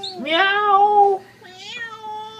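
A cat gives one long meow lasting about a second, its pitch rising at the start and then holding steady. A shorter, fainter call follows about a second and a half in.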